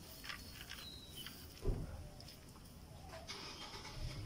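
Hands working potting soil and setting a plant into a cement planter: faint rustles and crunches of soil and leaves, with one dull thump a little under two seconds in.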